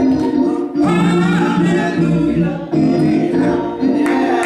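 Gospel singing: a woman's solo voice over a microphone in sung phrases with short breaks between them, over sustained keyboard chords.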